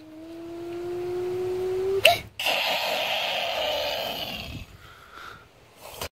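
A child's voice making a car-engine noise, one hum slowly rising in pitch for about two seconds, then a sudden sharp hit and a hissing crash noise that fades over about two seconds, the sounds of a staged toy-car crash.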